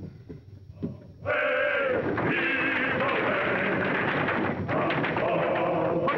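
A single knock about a second in, then a loud chorus of men's voices singing a dockside work chant with long held notes, starting suddenly and running on.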